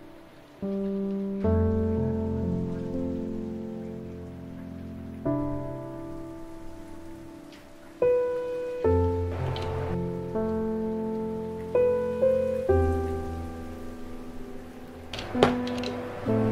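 Soft instrumental background music: held keyboard chords over a bass line, changing every second or few seconds. A few sharp clicks come in near the end.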